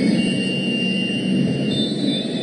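Indoor arena crowd din during a volleyball match, a loud steady roar of many spectators, with a thin high whistle-like tone held for about a second and a half.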